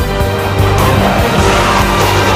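Backing music with the rushing engine noise of a fighter jet flying past over it. The jet noise swells from a second or so in.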